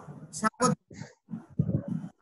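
A person's voice in short, broken fragments with brief silent gaps between them.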